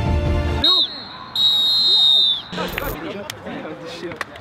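A sports whistle blown for the end of play: a short blast, then a long steady blast about a second later that drops off at its end. Background music cuts out just before the first blast, and players' shouts and chatter follow.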